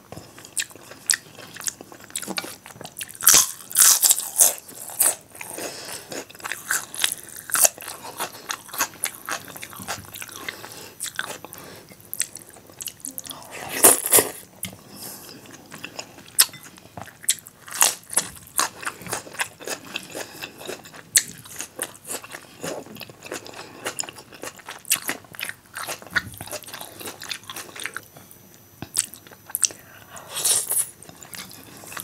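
Close-miked eating sounds: wet chewing of dal and rice eaten by hand, with crunchy bites of raw salad and many sharp, irregular mouth clicks, loudest in a few clusters.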